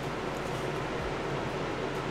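Steady ventilation noise: an even hiss with a low hum underneath.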